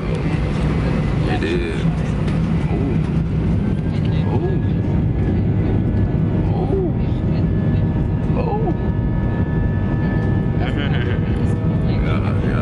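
Jet airliner engines heard from inside the passenger cabin during the takeoff roll: a loud, steady low roar, with a thin high whine joining in about a third of the way through.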